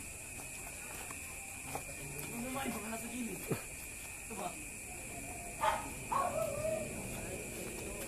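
Boxing gloves landing during sparring: a few sharp smacks, the loudest a little past halfway, over faint voices and a steady hiss.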